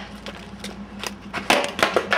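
Skateboard rolling with a few light clicks, then about a second and a half in a loud clatter of several sharp knocks as the board hits the pavement and goes over.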